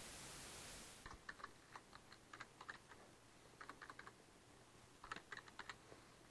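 Faint typing on a computer keyboard, in three short runs of keystrokes. A steady hiss fills the first second and stops about a second in.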